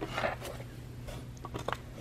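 Quiet handling of a flat-pack furniture panel: a soft rustle of a hand against the board shortly after the start, then a few light clicks.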